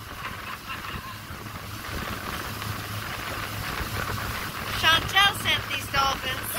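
Outboard motor running steadily at speed, a low hum under the rush of water in the boat's wake and wind on the microphone. About five seconds in, a high-pitched voice cries out several times, the loudest sound here.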